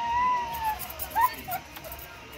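A woman's high-pitched voice: one long cry that rises and falls, then a few short high cries about a second in.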